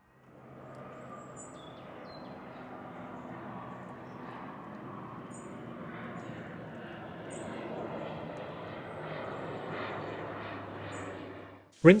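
Outdoor background sound: a steady, distant rumble that slowly swells, with a few faint, high bird chirps scattered through it. It cuts off suddenly just before the end.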